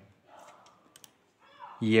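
A near-quiet pause holding a couple of faint computer-input clicks about a second in. A man's voice starts again near the end.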